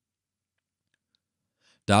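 Near silence, then a man's voice starts reading aloud in German near the end.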